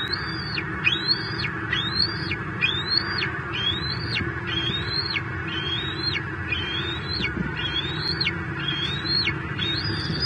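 Bald eaglet calling over and over in a steady run of high, thin notes, each rising and then held briefly, about one and a half calls a second. A steady hum of road traffic sits underneath.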